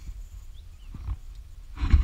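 Unsteady low rumble on the camera microphone, with a short scuffing noise near the end that is the loudest moment.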